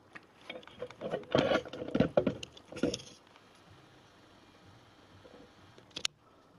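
Plastic CD drawer and loading mechanism being handled and seated inside an opened CD player: a quick run of clicks, knocks and scrapes over the first three seconds, and one short click right at the end.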